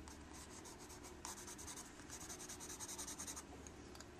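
Graphite pencil scratching quick back-and-forth hatching strokes on sketchbook paper, laying in tone. It comes in faint runs of rapid strokes with brief pauses between them.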